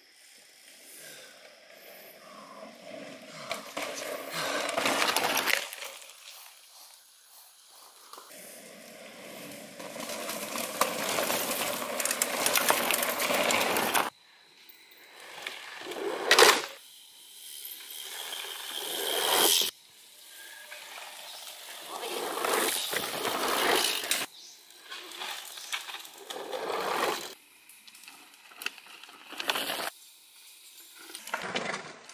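Mountain bikes rolling past one after another on dirt singletrack. Each pass is a rush of tyre noise that swells as the bike nears, several cut off suddenly. About halfway through comes one sharp, loud knock as a bike rides over a wooden boardwalk.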